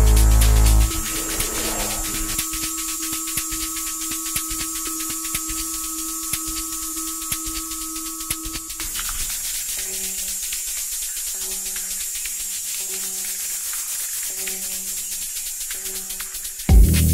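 Electronic tech house music in a breakdown: the kick drum and bass cut out about a second in, leaving fast hissing hi-hats over a held synth tone. About halfway through the held tone stops and a short synth chord repeats every second or so.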